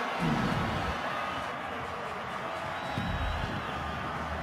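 A large stadium crowd cheering a home-team touchdown, steady and sustained throughout.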